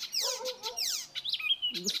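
Birds chirping: a quick run of high, sharply falling notes, several a second, repeated throughout.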